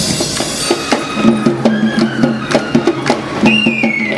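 A cadet Eastern band playing traditional music: drums struck in a running rhythm under a sustained melody on wind instruments.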